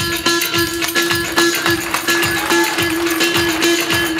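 Turkish folk dance music with a steady drum beat about three times a second under a held melodic note.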